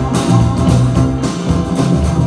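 Live band playing an instrumental passage: electric and acoustic guitars over a drum kit keeping a steady beat, with low bass notes underneath and no singing.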